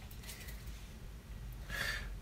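Quiet room with a low steady hum and a short soft breath near the end.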